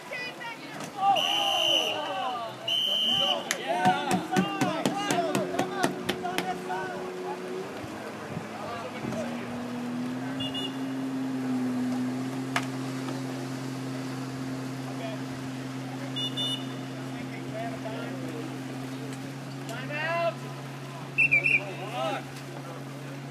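Referee's whistle blown in two short blasts about two seconds apart, calling a foul in a canoe polo game, with players shouting. A steady low drone sets in about nine seconds in, and a third short whistle sounds near the end.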